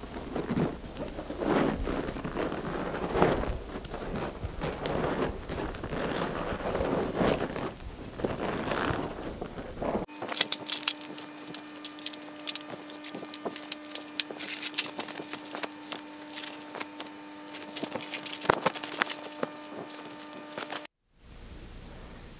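Heavy rubberised fabric of a deflated inflatable kayak rustling and creasing in uneven swells as it is rolled up tightly, squeezing the air out. After a cut about halfway through, sparse sharp clicks and clinks of gear being handled over a steady hum.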